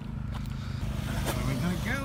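Steady low hum of a car engine running, slowly growing louder, with a faint voice in the second half.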